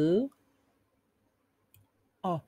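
A woman's voice sounding one short drawn-out syllable that rises in pitch at the very start, then near silence with one faint click shortly before the end.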